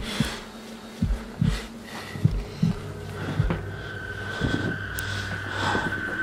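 A person's breathing with scattered knocks and scuffs as he squeezes through a narrow hole in a concrete wall. A steady high tone comes in about halfway.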